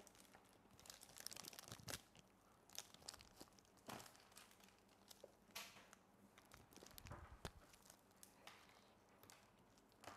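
Faint crinkling of thin plastic, from disposable plastic gloves and a plastic bag, as a felt-tip marker is handled. A few light clicks and knocks are scattered through it.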